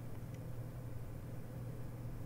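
Faint steady low hum with a light hiss: the room tone of the narrator's recording microphone while nobody speaks.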